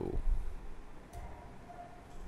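Quiet room with a few faint clicks from a laptop keyboard, one sharper click about a second in, followed by a faint steady tone that lasts less than a second.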